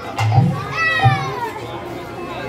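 Two deep strokes on a khol, the two-headed clay drum of Bengali kirtan, a little over half a second apart, with a high voice crying out and falling in pitch between them and other voices behind.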